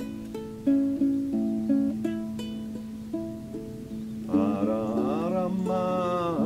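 Small plucked string instrument picking a slow line of single ringing notes over a steady low drone. About four seconds in, a voice joins with a wordless, gliding sung melody.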